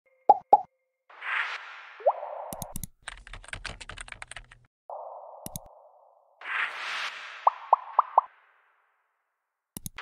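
Animated-intro sound effects: two quick pops, then a sequence of whooshes, a fast run of keyboard typing clicks, single mouse clicks, and four quick rising pops near the end.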